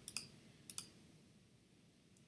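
Two faint computer mouse clicks, about half a second apart, as a checkbox on a web page is unticked.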